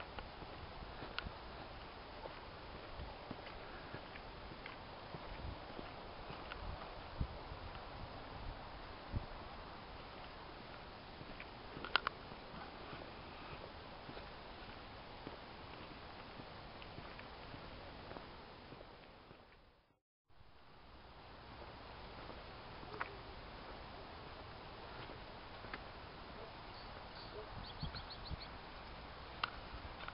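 Footsteps crunching along a dirt-and-gravel trail, irregular soft knocks with a few sharper clicks, over a steady outdoor hiss. About two-thirds of the way through the sound fades out to a moment of silence, then fades back in.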